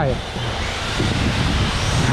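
Several electric RC drift cars running together on a smooth concrete floor: a steady hiss of sliding tyres with faint rising and falling motor whine.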